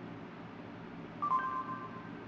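Phone speaker playing Google voice search's short electronic tone as it stops listening, a steady beep that steps down slightly in pitch, starting a little past a second in.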